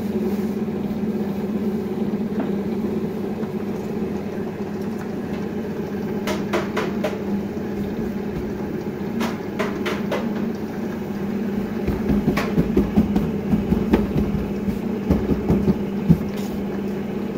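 Electric dough sheeter running with a steady hum, with scattered sharp clicks and knocks and, near the end, several heavier thumps as dough is handled on its belt and rollers.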